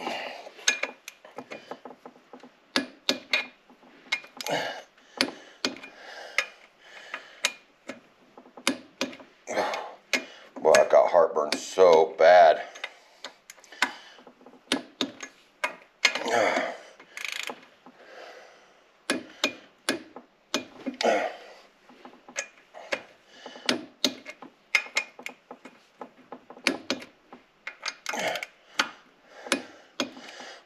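Ratchet of a click-type torque wrench clicking in short runs as the cylinder head bolts of a Yamaha G2 golf cart engine are tightened to torque, with a louder stretch about eleven seconds in.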